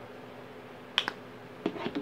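A sharp click about a second in, then a few softer clicks near the end, over low room tone.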